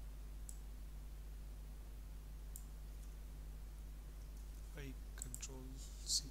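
A few faint, sharp computer mouse clicks over a steady low electrical hum, with a man's voice starting near the end.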